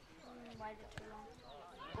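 Faint, distant shouting and calls from children playing rugby on a grass field, with a short dull knock about a second in and another near the end.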